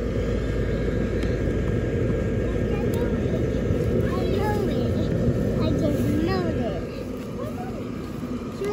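Electric blower fan of an inflatable Santa Claus yard decoration, running with a steady whir heard close up at the base of the inflatable; it grows a little fainter near the end.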